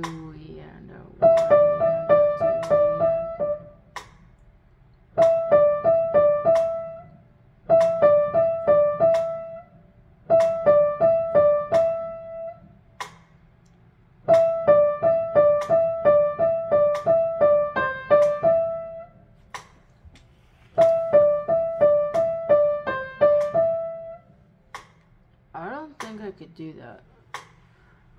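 Piano: a quick trill on two neighbouring notes, played in six short runs of about two to four seconds each, breaking off and starting again, as the passage is practised.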